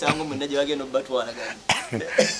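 Men's voices in casual talk, with a short, sharp cough about three-quarters of the way through.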